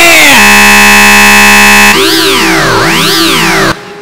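A brief yell is cut off by a loud, distorted, steady electronic buzz lasting about a second and a half. It then turns into a synthesized tone that sweeps up and down in pitch twice over a steady hum, and stops just before the end.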